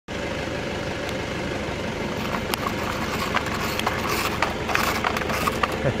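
Car engine idling steadily, with a few faint ticks over it.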